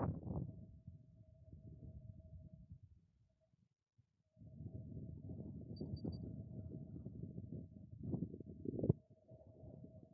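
Wind buffeting the microphone: a low rumble that drops out for about a second around three to four seconds in, then returns and gusts louder near the end, with a faint steady tone underneath.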